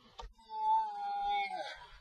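A man's drawn-out cry of dismay, one held note of about a second that wavers slightly and trails off, as his rocket's parachute fails to open. A faint click comes just before it.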